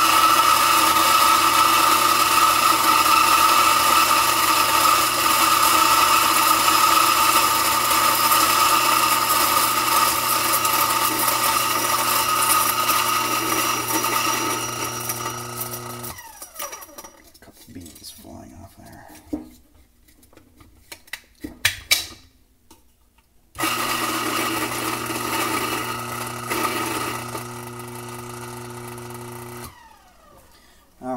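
Electric burr coffee grinder running steadily as it grinds an espresso dose, winding down and stopping about halfway through. A few light knocks follow, then it runs again for several seconds and stops just before the end.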